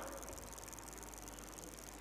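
A pause with no speech: faint room tone with a steady high, fast-pulsing hiss and a low mains hum.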